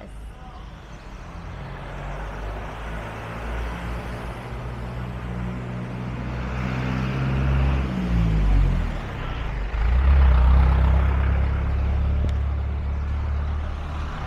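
Motor vehicle engine running close by on the street, with traffic noise around it. Its pitch drops about eight seconds in as it passes, then a louder, steady low engine note follows to the end.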